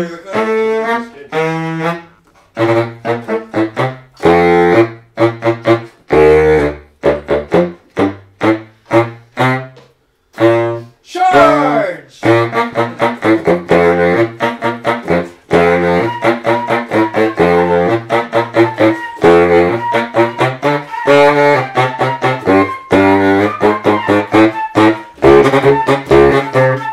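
Saxophone playing a rhythmic riff of short, punchy staccato notes reaching into the low register. The riff breaks off briefly near the middle, slides in pitch, then carries on in a busier run of notes.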